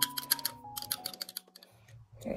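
A quick run of small, light plastic clicks and taps in the first second, from a tiny plastic vial and a miniature plastic cup being handled together. Soft background music with slow, stepping notes plays underneath.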